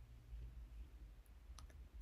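Near silence: room tone with a low hum, and a couple of faint clicks of a computer mouse near the end.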